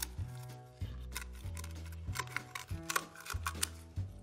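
Kitchen shears snipping through a sea urchin's shell: a string of irregular sharp, crunchy clicks as the top is trimmed away, over background music with a steady low bass.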